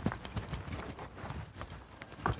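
A person's quick running footsteps: a fast, uneven series of short knocks.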